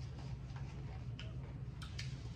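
A few scattered small clicks and crackles, about four in two seconds and irregularly spaced, from eating crunchy taco shells and chips and handling napkins and food at a table, over a steady low hum.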